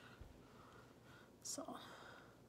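Near silence: room tone, with a soft spoken "so" about one and a half seconds in.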